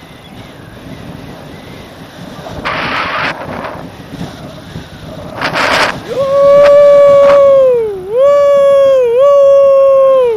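Wind rushing over the microphone, with two stronger gusts, then from about six seconds a man's loud, long held yell: two drawn-out cries on one steady pitch, each falling away at its end.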